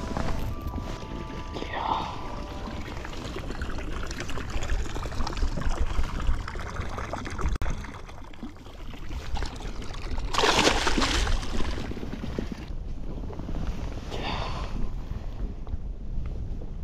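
Wind buffeting the microphone on an open boat on a lake, a steady low rumble with a stronger gust about ten seconds in.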